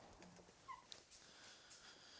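Near silence: faint room tone with a few soft, brief ticks.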